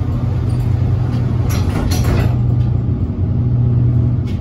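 The side doors of a Nippon Sharyo 6200-series bi-level gallery coach slide shut, with a couple of sharp knocks around one and a half to two seconds in as they close. A steady low hum from the stopped train runs underneath.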